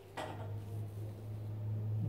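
A grooming brush being drawn through a long-haired dog's thick coat, a rough brushing noise that starts just after the beginning, over a steady low hum.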